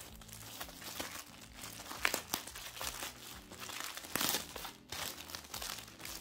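Clear plastic packaging bag crinkling and crackling as hands unwrap it, in irregular rustles with louder bursts about two seconds in and again about four seconds in.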